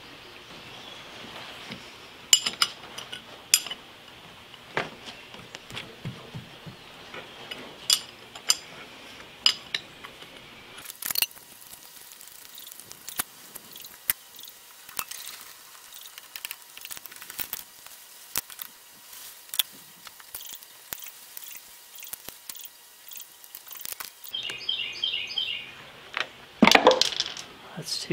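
Steel hand tools and fixture parts clinking and knocking on a milling machine's cast-iron table as a fixture is unbolted and taken apart, in scattered sharp metallic clinks, with a stretch of quicker, lighter clicking in the middle.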